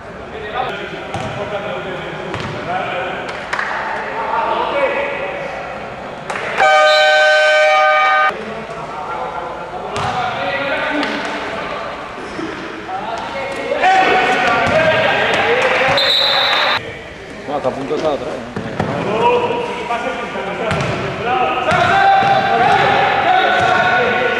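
Basketball game in a sports hall: a ball bouncing on the court under players' and bench shouting. About seven seconds in, a buzzer sounds loudly for about a second and a half, and around sixteen seconds a short high whistle blows.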